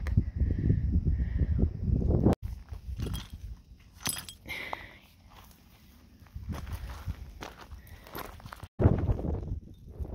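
Footsteps walking over rocky, gravelly desert ground, with wind buffeting the microphone in a low rumble at the start and near the end.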